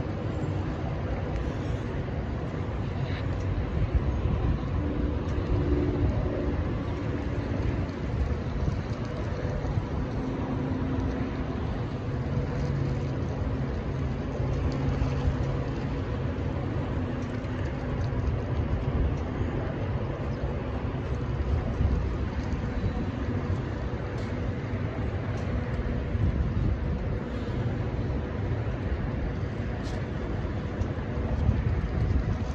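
Steady low rumble of road traffic, with a vehicle engine's hum swelling and fading through the middle.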